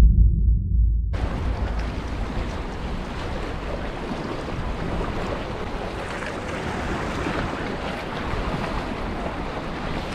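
A deep low boom for about the first second that cuts off suddenly. After it comes steady wind on the microphone and waves washing against the jetty rocks.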